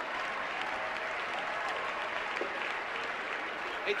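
Large audience applauding steadily, with scattered voices in the crowd.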